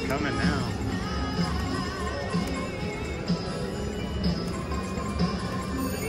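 Casino floor ambience: background music with a steady beat of about one pulse a second, layered with electronic chimes and tunes from video poker and slot machines and indistinct voices.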